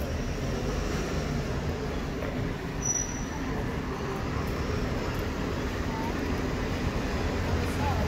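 Town street ambience: a steady low rumble with faint voices in the background, and a small car's engine growing louder near the end as it approaches.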